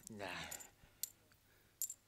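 A man's voice says a short word, then a single sharp click about a second in, in an otherwise quiet recording.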